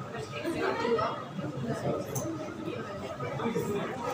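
Indistinct chatter of several voices talking over one another, a class of students talking among themselves.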